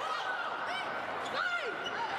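Athletic shoes squeaking on the hardwood court during a volleyball rally, with several short high squeaks and one held squeal, over the murmur of an arena crowd.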